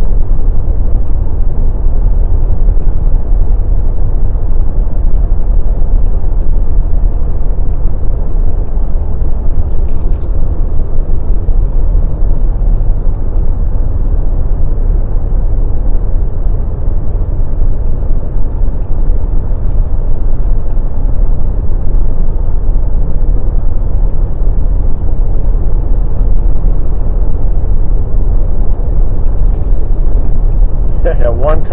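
A car driving steadily at road speed, heard from inside the cabin: a loud, even, low rumble of tyre, road and engine noise.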